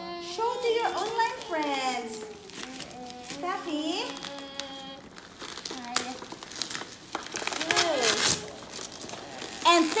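Wrapping paper and plastic packaging being torn and crinkled as a present is unwrapped, with children's voices over it.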